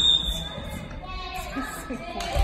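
Volleyball practice in a large echoing gym: distant players' voices calling across the court, with a brief high squeak right at the start.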